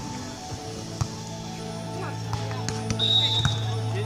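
Beach volleyball struck by players' hands and forearms during a rally: a sharp slap about a second in and a few more between about two and three and a half seconds in, over steady background music.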